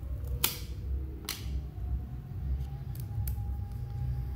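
Sharp snaps of cardboard trading cards being peeled apart from a stack that is stuck together: two loud snaps in the first second and a half, then a few lighter ones.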